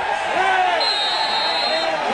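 Referee's whistle blown once, a single steady high blast of about a second starting near the middle, stopping play for a foul. Men's shouting voices are heard around it.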